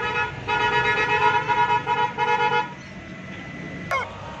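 Motorcycle horn honking in a series of blasts: one running on from before, then a long honk and two short beeps, stopping a little under three seconds in. A brief sharp sound follows near the end.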